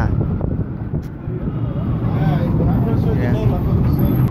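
Busy city street traffic: a steady low rumble of cars, with faint voices of passers-by in the middle of the stretch.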